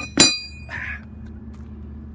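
A rusty iron hand tool set down on stone paving: one sharp, ringing metallic clink near the start, then a brief scrape of metal on stone.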